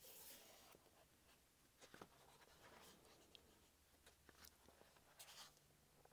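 Faint pages of a large glossy hardcover book being turned by hand: a paper swish at the start and another about five seconds in, with light rustles and ticks of the paper between.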